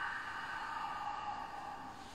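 A man's long, steady exhalation, heard as a breathy rush of air that slowly fades over about two seconds: a full breath out before holding the breath for the yogic locks.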